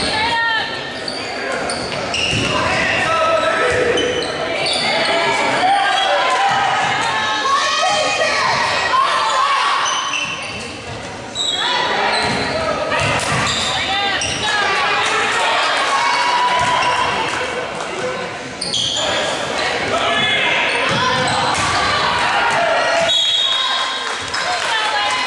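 Live girls' basketball game in a gym: a basketball being dribbled on the hardwood court while players and spectators call out, all echoing in the hall.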